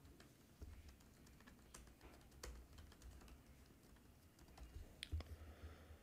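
Faint computer keyboard typing: irregular key clicks, with a couple of louder ones about five seconds in.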